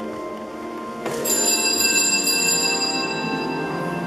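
Small altar bells ring out once over steady held music chords about a second in, their bright high ringing fading away over about two seconds.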